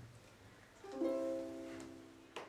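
Ukulele strummed once about a second in, the chord left ringing and slowly fading.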